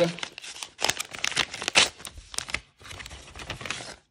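A paper mailing envelope being torn open and its paper contents handled: a quick, irregular run of rips and crinkles, with a short lull about two-thirds of the way through.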